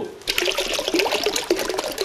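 Water pouring from upturned plastic bottles and splashing into a plastic tub, starting about a quarter second in.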